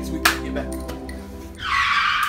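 Background music, then a sudden tire-screech sound effect starting near the end.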